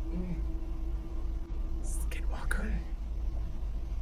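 A faint, whispery voice calling from another room, "hey, come here… come here, I told you, come here", over a steady low hum. The man recording takes the voice for his own.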